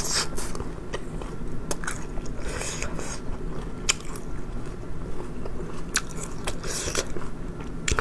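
Close-up chewing of a mouthful of spicy, chewy food, with scattered sharp wet mouth clicks and smacks.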